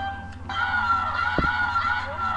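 A home-made hip-hop instrumental beat playing: a held, slightly wavering high lead note over a steady low bass, with a single deep bass hit about one and a half seconds in.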